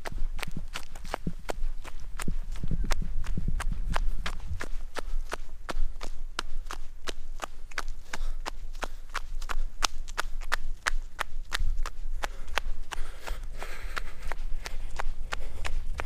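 Running footfalls in sandals on a dirt trail, a steady rhythm of about three sharp steps a second, with a low rumble underneath.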